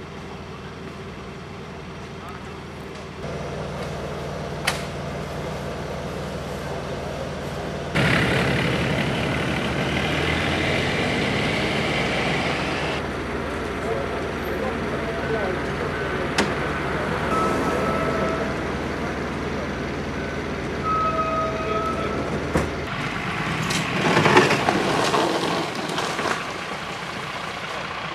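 Steady hum of idling emergency-vehicle engines with indistinct voices of people talking nearby. The background shifts abruptly several times as the shots change.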